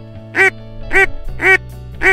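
A run of loud duck quacks, one about every half second, over background music with steady low notes.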